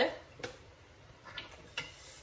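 A ceramic dinner plate being picked up off a granite countertop: three light clicks and knocks, the first about half a second in and two more near the end.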